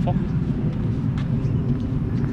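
Steady low rumble of wind buffeting the microphone of a camera carried by a runner.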